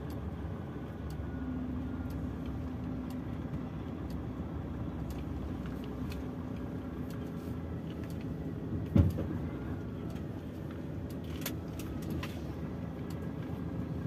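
Diesel truck engine running at low speed, heard from inside the cab as the truck is manoeuvred slowly to park. A single sharp thump about nine seconds in, with a few light ticks after it.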